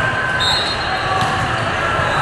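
Ball bounces over a steady din of voices in a large sports hall with many volleyball courts.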